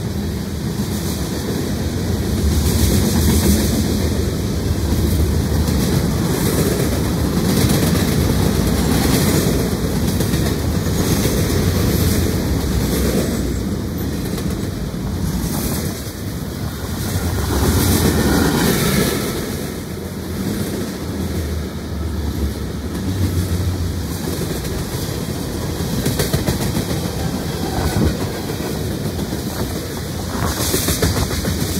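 Norfolk Southern freight train's cars (covered hoppers, centerbeam flatcars, tank cars) rolling past at speed: a steady rumble of steel wheels on rail, with rhythmic clickety-clack as the wheel trucks cross rail joints. It swells louder with a faint high squeal about two-thirds of the way through.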